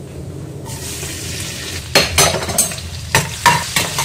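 Chopped ginger, garlic and green chilli hit hot oil with cumin in a stainless-steel kadhai and start sizzling about half a second in. From about two seconds a perforated steel ladle stirs them, scraping and clinking sharply against the pan several times.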